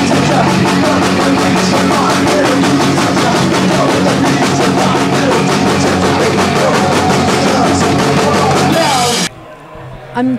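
Live punk rock band playing loud: drums, electric guitar, bass guitar and a singer at the microphone. The music cuts off abruptly near the end.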